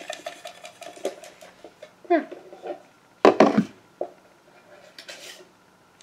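Light clicks and knocks of small plastic toy figures being handled and set down, with two brief voice-like sounds about two and three seconds in.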